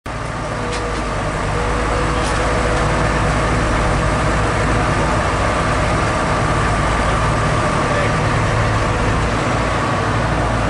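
Diesel engines of an asphalt paver and a dump truck running steadily at close range, a continuous heavy rumble, with a couple of faint clicks in the first few seconds.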